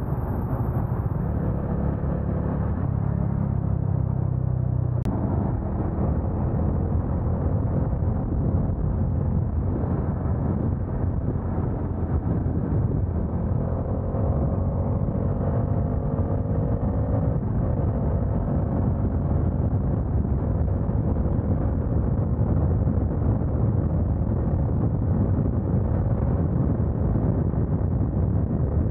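Motorcycle riding at highway speed: a steady engine drone under wind and road noise, heard from the rider's own bike. About five seconds in there is a sharp click and the low drone changes, and later the engine note drifts slightly up and down in pitch.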